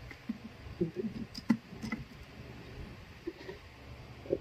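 A few light clicks and taps as a smartphone is handled and set into a folding desktop phone stand, over faint low handling noise.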